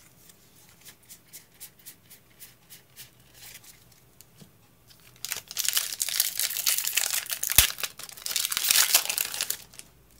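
A foil Pokémon booster pack wrapper being torn open and crinkled, loud and rustling for about four seconds from halfway through, with one sharp snap in the middle. Light ticks of trading cards being handled come before it.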